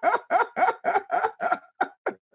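A man laughing heartily in a run of rhythmic "ha" bursts, about four a second, dying away near the end.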